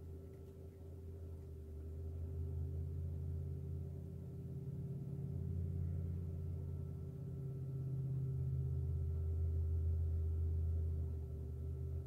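A low droning hum that swells and eases in slow waves over several seconds, with a faint steady higher tone above it.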